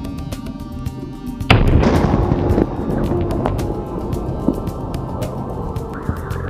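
Background music, with one sharp, loud boom about a second and a half in that dies away over about a second: the air-blast detonation of a small C4 plastic explosive charge of about 40 grams.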